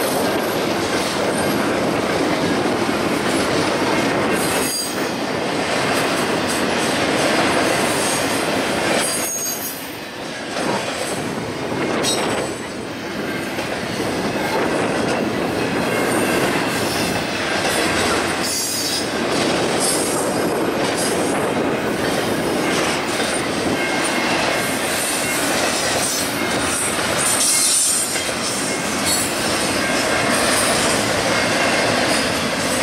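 Double-stack intermodal container train passing: steady noise of steel wheels running on the rails under the loaded well cars, with a thin high wheel squeal now and then.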